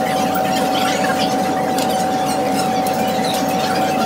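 A steady, single-pitched whine that holds one unchanging tone, over restaurant background noise with faint clinks of cutlery.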